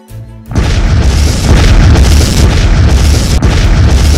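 Movie explosion sound effect: a loud blast about half a second in, followed by a sustained deep rumble.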